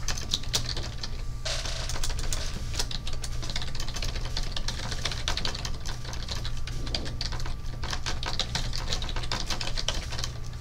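Rapid, irregular clicking and tapping, dense throughout, over a steady low hum.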